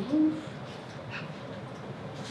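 A brief hummed 'mm' from a person's voice just after the start, rising and then held for a moment, followed by quiet room tone with a few faint clicks.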